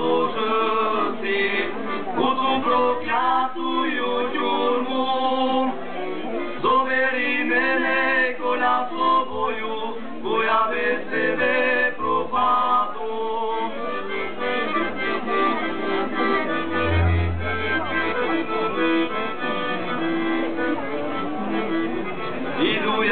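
Live music from a concert stage, heard through the PA loudspeakers from among the audience.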